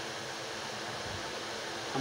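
Steady, even hiss of background room noise with no other sound in it.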